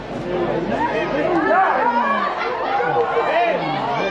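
Several voices calling and chattering over one another, the shouts of players and the talk of spectators at a football pitch, with no words standing out clearly.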